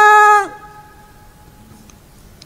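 A male qari reciting the Qur'an in melodic tilawah style, holding a long steady note that ends with a slight dip in pitch about half a second in. Its echo trails off faintly over about a second as he pauses for breath.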